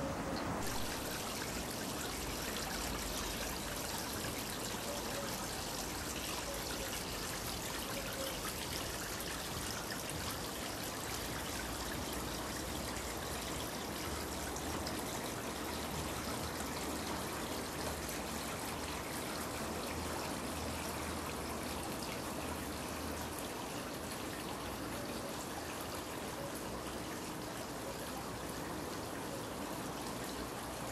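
Steady, even hiss with no distinct events, growing brighter about a second in.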